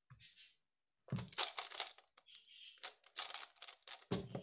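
Plastic Skewb puzzle clattering and clicking as it is turned quickly by hand, in two spells of rapid turns about a second long each.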